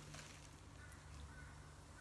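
Near silence: room tone with a steady low hum, a faint brief rustle just after the start, and a few faint short high chirps in the second half.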